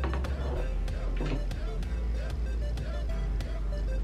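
Background music with a steady beat and heavy bass.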